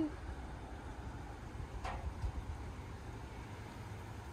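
Low, uneven background rumble outdoors, with one brief faint sound about two seconds in.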